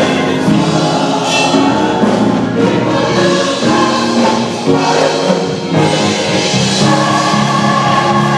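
Gospel choir singing together in harmony, the voices settling into a long held chord about six seconds in.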